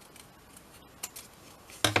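Scissors cutting through the folded paper of a small envelope: a couple of short, sharp snips about a second in.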